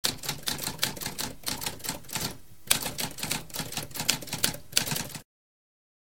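Typewriter keys clacking in rapid succession, with a brief pause about halfway through. The typing stops abruptly about five seconds in.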